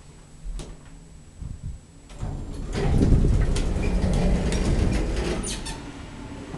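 Elevator doors sliding, a rattling rumble with many small clicks that swells about two seconds in and fades near the end, after a couple of faint clicks.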